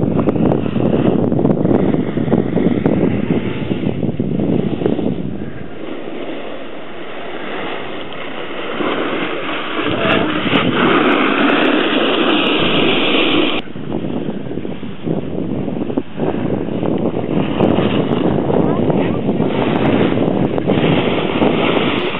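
Wind buffeting a camcorder microphone on a ski slope, with snowboard edges scraping over packed snow as riders pass close by. The loud rushing noise changes character abruptly several times as the footage cuts.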